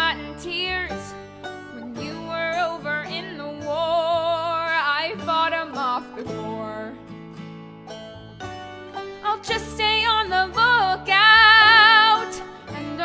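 A woman singing a slow country-style ballad over instrumental accompaniment, holding long notes with vibrato about four seconds in and again near the end.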